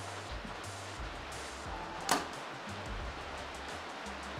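Compound bow shot: a single sharp snap of the string release about two seconds in, over a steady hiss of rain.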